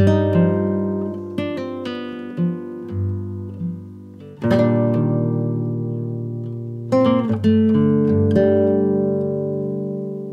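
Background music on acoustic guitar: a chord struck near the start, again about halfway through and about seven seconds in, each left to ring out, with lighter single plucked notes between the first two.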